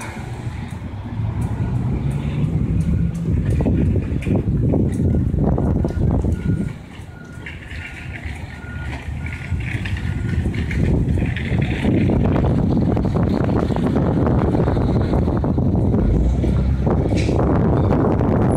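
A large vehicle's engine running, with a reversing alarm beeping evenly for a few seconds about a third of the way in, over a steady outdoor rumble.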